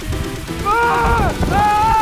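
Background music, with a man yelling over it in two long, high cries as he drops off the platform on a bungee jump.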